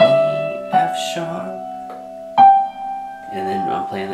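Electronic keyboard in a piano sound playing single right-hand melody notes one at a time: one struck at the start, a higher one about three-quarters of a second in and another about two and a half seconds in, each left ringing.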